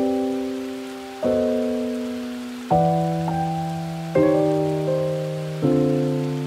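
Background music: slow keyboard chords, one struck about every second and a half and left to fade before the next.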